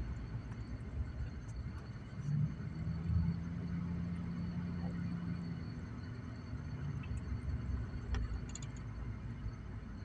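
Steady low rumble of a car driving, heard inside the cabin, with a steadier low drone for a few seconds from about two seconds in and a couple of faint clicks.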